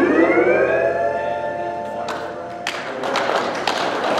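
Lap steel guitar's last note sliding up in pitch and held, ringing out over the backing track's final chord as it fades. About two and a half seconds in, scattered hand-clapping begins.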